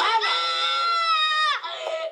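A boy screaming in one long, high cry while being spanked, held steady for about a second and a half before it drops in pitch and breaks off.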